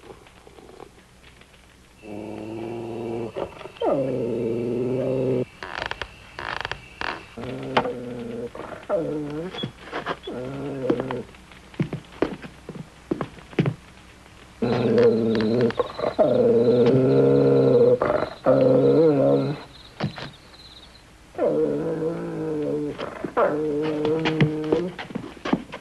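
A dog growling in four long spells, with short knocks and scuffles between them.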